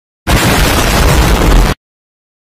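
Explosion sound effect: a loud blast with a deep rumble that starts suddenly about a quarter second in, lasts about a second and a half, and cuts off abruptly.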